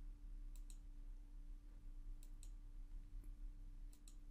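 A few faint computer mouse clicks, mostly in quick pairs, as filter buttons on a web page are clicked, over a faint steady hum.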